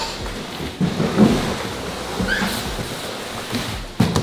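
Large cardboard sheets rustling and scraping as they are carried, with a few dull knocks along the way.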